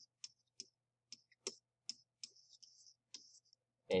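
Stylus tapping and scratching on a pen tablet during handwriting: a series of light clicks, with short scratchy strokes in between.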